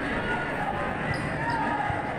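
A basketball bouncing on a hardwood gym floor, with voices in the background.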